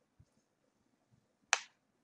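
Near silence broken by a single short, sharp click about one and a half seconds in.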